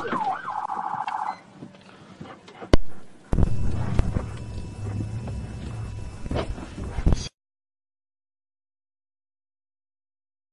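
A brief electronic police siren burst, about a second long with a fast pulsing tone, then a sharp click and the low rumble of the patrol car moving off. The sound cuts off abruptly about seven seconds in.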